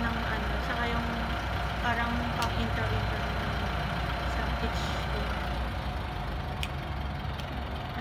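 A woman talking quietly over a steady low mechanical hum, like an engine idling, with a couple of faint clicks.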